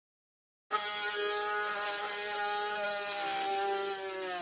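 Slite mini electric rotary grinder's small motor whining at a steady high pitch, coming in suddenly under a second in.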